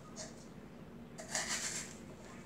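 Faint rustling of artificial flower picks being handled and pushed into a small vase, with a brief, louder rustle in the second half.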